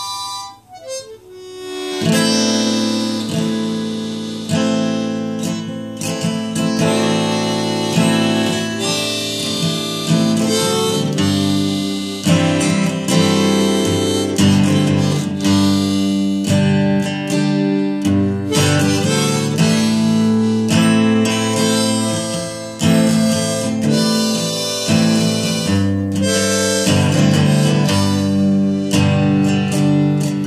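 Folk instrumental of harmonica over strummed acoustic guitar. The harmonica slides down in pitch near the start, and the guitar strumming comes in about two seconds in, after which both play on together.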